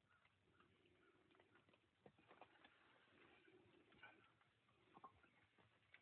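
Near silence: faint background hiss with scattered small ticks and patter.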